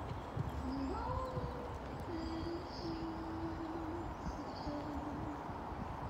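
A bird, most likely a dove, cooing in a few low, hollow notes. A rising call comes about half a second in, then held notes from about two seconds to near five seconds. Under it are the muffled thuds of a horse's hooves cantering on the sand arena.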